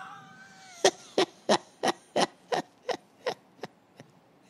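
A man laughing in short breathy bursts, about three a second, each a little fainter, dying away after about three seconds.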